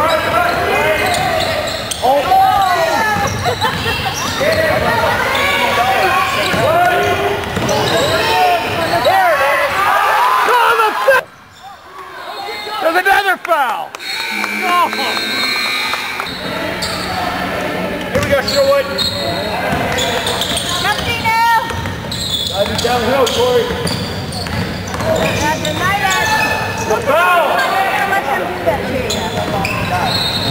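Indoor basketball game in a gym: overlapping crowd and bench voices with a basketball bouncing on the hardwood floor, echoing in the hall. The sound drops away sharply about a third of the way through and returns a few seconds later.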